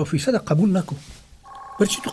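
A man talking, then, about a second and a half in, a steady electronic tone of two pitches sounding together starts and carries on under his speech.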